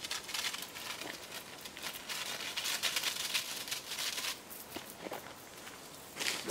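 A garden sprayer's wand spraying liquid into a tree's leaves, a steady hiss that stops about four seconds in.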